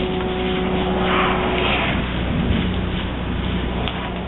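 Versa-Vac insulation removal vacuum running, its hose sucking up loose blown-in attic insulation with a steady rush of air over a machine hum. The hiss swells louder for a moment about a second in.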